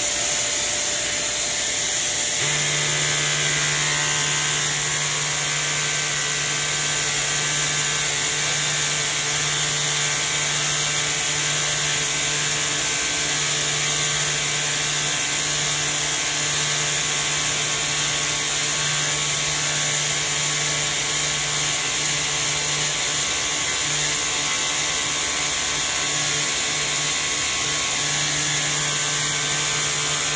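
Vacuum cleaner motor running loud and steady, pulling air through a Flowbee haircutting head whose clipper blades are driven by the airflow. About two and a half seconds in, a lower steady hum joins and holds.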